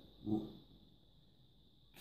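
A man's brief hesitation sound, a short "uh", about a quarter second in, then quiet room tone with a faint steady high-pitched whine.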